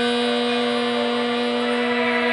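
A woman's voice holding the chanted seed syllable "ham" of the crown chakra as one long, even hum at a single pitch, over soft background music.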